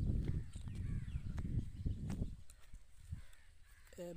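A low rumble with a few faint bird calls over it; the rumble drops away a little past halfway.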